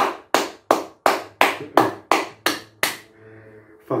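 A person clapping their hands steadily, about three claps a second, stopping about three seconds in.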